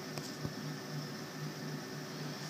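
Faint steady low hum of an indoor room, with one light tap about half a second in.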